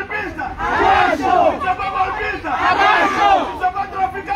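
A crowd of protesters shouting a slogan together, with a loud shouted phrase about every two seconds.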